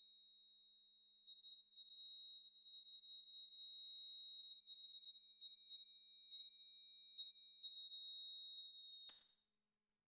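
High, steady electronic sine tones sounding together, several pitches held without change, the upper one loudest; they cut off suddenly with a click about nine seconds in.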